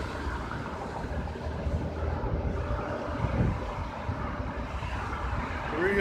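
Steady road traffic: cars and trucks passing on a multi-lane road, a continuous low hum of tyres and engines.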